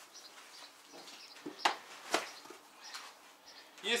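Plastic crates being set down in an SUV's cargo area: a few soft knocks and two sharp ones about half a second apart, near the middle.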